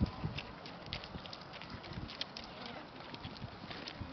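Faint hoofbeats of a pony cantering on a sand arena, a series of soft irregular thuds and clicks.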